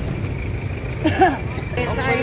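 A woman's short spoken phrase about a second in, over a steady low outdoor rumble.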